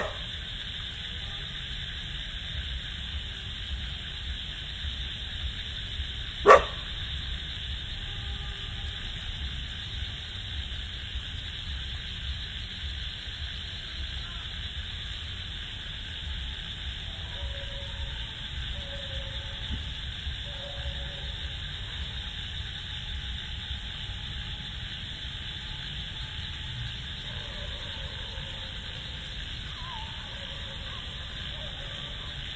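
Night outdoor ambience with a steady high hiss, broken by a single sharp dog bark right at the start and another about six and a half seconds in; faint short distant sounds come and go in the second half.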